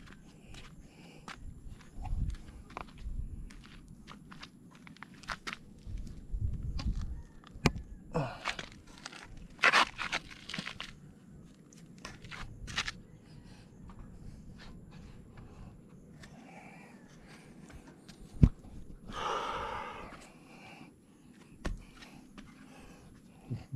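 Footsteps on a concrete roof slab, with scattered knocks and rustles from a handheld camera being moved about; a single sharp knock comes near the end, followed by a short rustling scrape.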